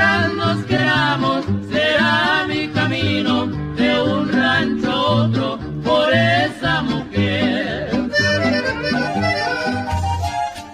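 Norteño music with no singing: a button accordion plays the melody in quick, ornamented runs over an alternating bass accompaniment.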